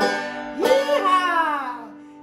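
Five-string banjo's final chord ringing out and fading at the close of a song, with a man's voice rising and then sliding down in pitch in a short wordless sound about half a second in.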